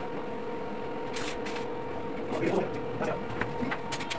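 Steady electrical hum of a portable inverter arc-welding machine switched on between welds, with a few light metal clicks and taps a little past a second in.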